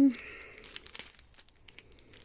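Small clear plastic baggie of square diamond-painting drills crinkling as it is handled, with faint irregular crackles.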